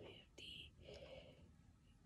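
Near silence, with a faint whispered murmur from a woman's voice in the first second.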